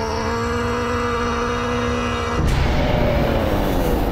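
A man's long, held shout, steady in pitch, lasting about two and a half seconds. It is then cut off by a loud, deep rumbling crash of earthbent rock.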